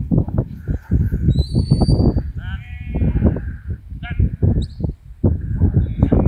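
Wind buffeting the microphone throughout, with sheep bleating. A shepherd's whistle gives a held, slightly rising note about a second and a half in, and a short sharp upward whistle a little after four seconds.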